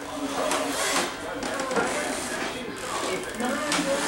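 Indistinct voices talking, the words unclear.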